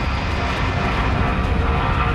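Twin-engine jet airliner's turbofan engines running: a steady, loud rumble with a faint high whine above it.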